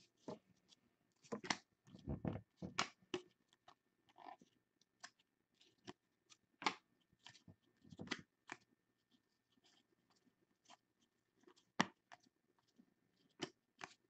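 Stack of trading cards being thumbed through by hand: a faint, irregular run of clicks and snaps as card edges slip and flick past each other, with a denser rustle about two seconds in.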